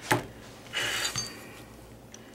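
Small metal tools and their plastic wrapping being handled: a sharp click near the start, then a brief rustle with a light metallic clink about a second in.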